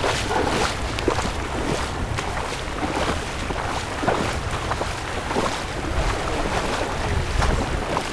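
Footsteps splashing and wading through shallow, fast-flowing floodwater, a repeated irregular slosh over the steady rush of the moving water. Wind buffets the microphone with a low rumble.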